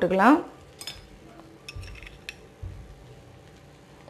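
A steel slotted spoon clinking against a steel kadai of fried rice: a few light, sharp metallic clinks spread over a couple of seconds, with two dull knocks among them.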